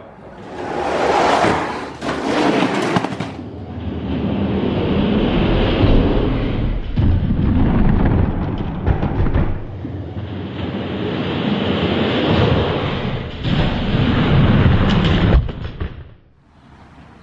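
Plastic-wheeled diecast toy monster trucks rolling and clattering down a plastic toy race track, heard as a continuous loud rattling rumble with occasional knocks. The noise stops abruptly at the end.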